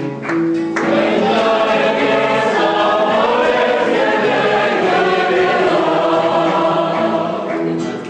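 A group of people singing together to a strummed acoustic guitar. Only the strumming and a few held notes are heard at first; the full chorus of voices comes in about a second in, and the strumming stands out again near the end.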